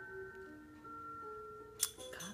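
A simple electronic chime tune of steady, bell-like notes, like a baby toy's melody, with one sharp click near the end.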